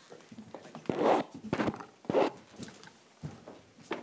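A series of short rustling scrapes close to the microphone. The two loudest come about one and two seconds in.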